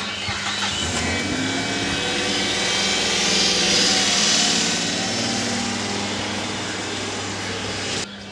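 An engine running with a steady low hum, growing louder toward the middle and easing off again.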